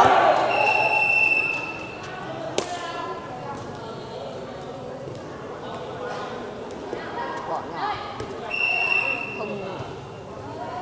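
Referee's whistle blown twice, each a steady high blast of about a second, one near the start and one near the end, with a single sharp ball strike a couple of seconds after the first, over a constant hubbub of voices.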